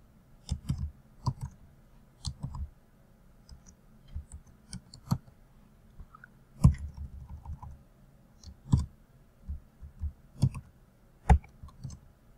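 Typing on a computer keyboard: irregular keystrokes in short runs with pauses between them, a few of them louder.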